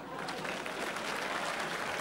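Studio audience applauding, a dense, steady patter of clapping that swells in just after the start.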